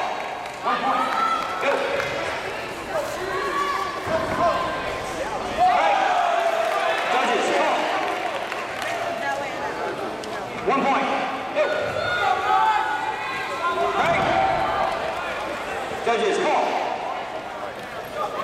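Voices shouting and calling out almost without a break around a karate sparring bout, the words not clear, with a few thuds mixed in.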